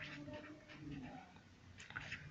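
Faint short strokes of a pen drawing lines on paper. A faint wavering pitched whine runs under them.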